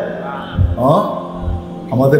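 A man's voice chanting in a drawn-out, sing-song style of sermon delivery, with held notes and a pitch that slides up and down about a second in.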